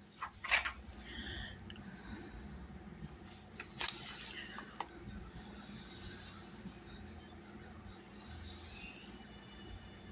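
A page of a spiral-bound paper notebook being turned, a short crisp rustle about four seconds in, with a couple of faint clicks just after; otherwise low room tone.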